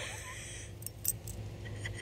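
Metal ID tags on a dog's collar clinking faintly a few times as a hand handles the collar.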